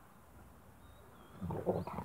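Spanish mastiff giving a short, deep growl about a second and a half in, as two of the dogs tussle.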